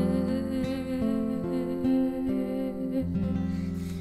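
Acoustic guitar and voice ballad: plucked guitar notes and chords ringing under a long held sung note, the music easing down near the end.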